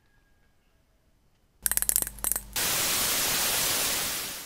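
TV-static sound effect: after a near-silent pause, about a second of crackling glitch clicks gives way to a steady hiss of white-noise static.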